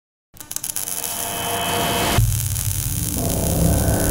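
Logo-intro sound effects: crackling over a rushing noise that builds in loudness, then a deep rumble that comes in a little over two seconds in and keeps rising.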